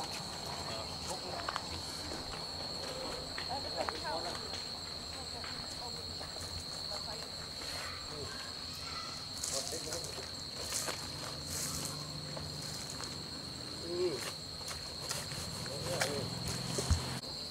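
Insects chirring in one steady, high-pitched tone, with faint distant voices now and then.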